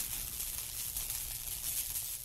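Electric crackling and hissing sound effect over a low rumble, from an animated outro with sparks, running steadily.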